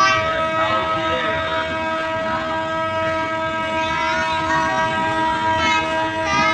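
Passenger train running, heard from inside the carriage at the window: a continuous rumble of the ride with a steady high-pitched tone held under it.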